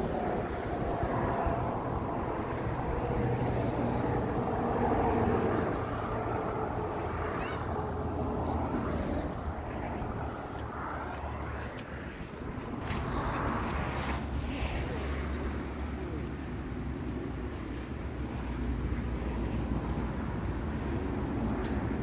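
Steady rumble of road traffic, with an engine drone that is clearest in the first few seconds.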